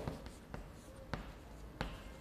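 Chalk writing on a blackboard: faint strokes with three short sharp taps of the chalk against the board.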